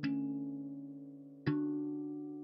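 Handpan picked up by contact pickups and played through a preamp with its reverb switched on. Two notes are struck, one at the start and one about a second and a half in, and each rings on and slowly dies away.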